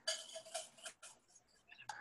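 A few faint, short clicks and light taps.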